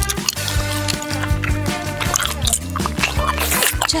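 Background music with a steady bass line, with short wet, drippy sound effects over it.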